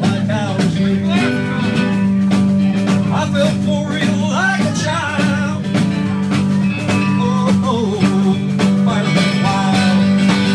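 Live band playing a country song loudly, with a voice singing over a steady beat.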